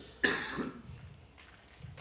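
A person coughing once, a short, sudden cough about a quarter of a second in.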